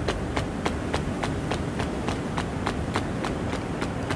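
Quick, even tapping, about four taps a second, in time with the legs flapping up and down in butterfly pose on a yoga mat.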